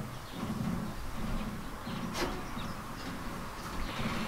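Wind gusting on the microphone, an uneven low rumble, with one sharp click about two seconds in.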